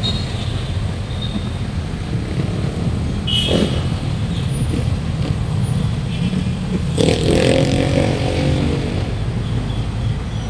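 City street traffic: a steady low rumble of passing vehicles. A brief higher sound comes about a third of the way in, and a little past halfway a louder vehicle passes with a pitched engine note lasting over a second.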